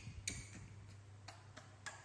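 About four short, sharp taps, irregularly spaced, over a low steady hum.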